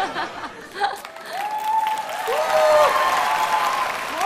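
Studio audience applauding, with voices calling out over the clapping in the middle.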